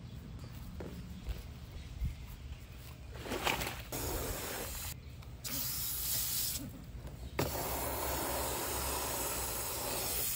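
Garden hose spray nozzle spraying water over a tortoise's shell and into a plastic tub: it starts about four seconds in, cuts out twice briefly, then runs steadily through the last few seconds.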